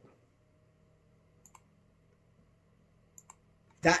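Quiet room tone with a few faint, sharp clicks: one about a second and a half in and two close together around three seconds. A man's voice starts near the end.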